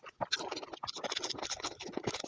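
Close-miked ASMR eating sounds: a dense, fast run of crackly clicks and crunches from chewing, starting a moment after a brief pause.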